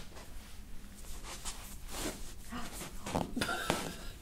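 Hands gripping and working a patient's ankle and lower leg: soft rustling with a few scattered light clicks, and a short breathy laugh near the end.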